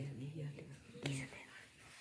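A pause in the speech, holding only a faint, low murmur of the man's voice and a single soft click about a second in.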